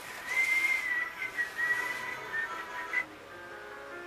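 A high whistling tone, held near one pitch with a few small steps for about three seconds and cut off abruptly, followed by soft musical notes.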